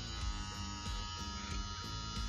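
Gamma+ Cyborg cordless hair clipper's brushless motor running steadily, a really quiet, even hum with a fine high whine.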